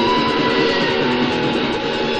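Metal band rehearsal recorded on a stereo tape deck through two cheap microphones in the room: distorted electric guitars, one holding a long lead note that has just been bent up and fades over the first second and a half.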